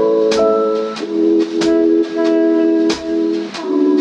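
Music: sustained chords over a steady drum beat with a kick drum.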